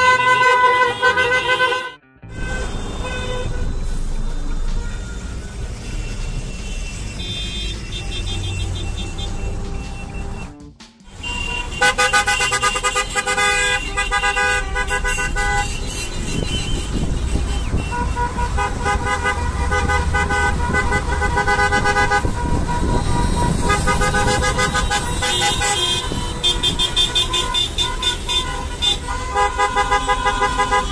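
Car horns from a long line of cars honking in chorus, a protest honk, with steady horn tones sounding over and over above the low running of the cars. The sound drops out briefly twice, about two seconds in and about eleven seconds in.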